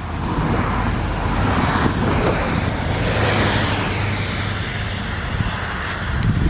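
Approaching freight train led by a KCS ES44AC diesel locomotive: a steady low engine rumble under wheel-on-rail noise, growing louder to a peak about three seconds in and easing slightly after.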